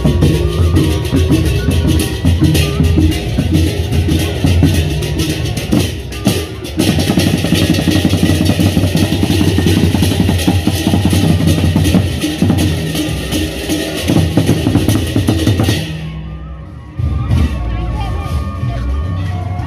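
Sasak gendang beleq ensemble playing in procession: large double-headed barrel drums beaten in fast interlocking rhythm over a steady wash of cymbals and small gongs. Near the end the cymbals stop and the playing fades briefly.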